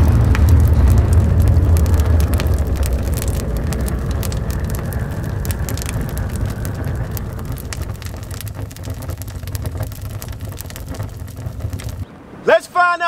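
Cinematic logo-reveal fire effect: a deep rumble with scattered crackling, fading slowly and cutting off at the end.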